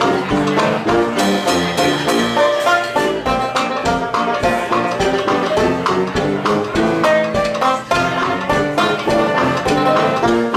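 A live ragtime band of piano, banjo, tuba and drum kit playing with a steady beat.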